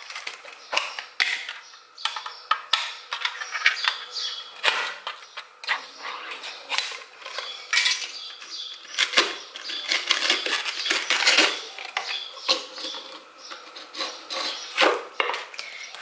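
Metal tins of wafer rolls being opened and handled, with a dense run of short clicks, knocks and rustles.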